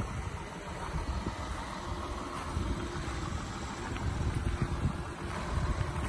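Porsche Macan S Diesel's 3.0-litre V6 diesel engine idling steadily, under a gusty low rumble.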